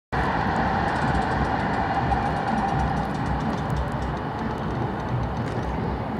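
San Diego Trolley light-rail train passing: a steady rumble with a held tone that fades out about halfway through.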